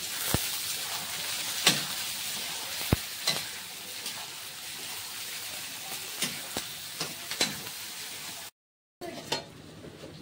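Sliced onions sizzling steadily as they fry in oil in a kadhai, at the start of browning, with a steel spatula scraping and clinking against the pan now and then. The sizzle breaks off near the end.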